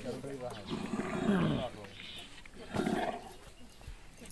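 Rough, roar-like growling calls from a hand-held bamboo-tube noisemaker: a short call at the start, a longer one about a second in that slides down in pitch, and a weaker one near the end.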